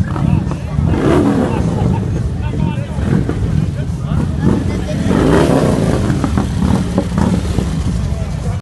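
Crowd chatter over a steady low rumble of motorcycle engines running.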